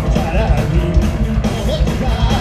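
Punk rock band playing live and loud: electric guitar, bass and drums, with a man singing into a microphone over them.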